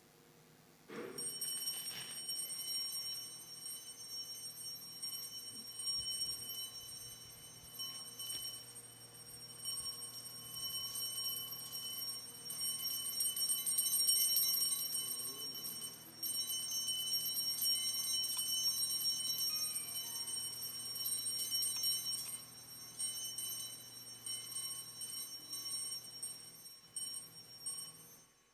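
Altar bells (sanctus bells) rung continuously, starting about a second in and stopping near the end, marking the blessing with the Blessed Sacrament in the monstrance.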